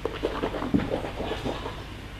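A man sipping red wine and slurping it in his mouth, drawing air through the wine in a series of short, irregular, breathy slurps and gulps.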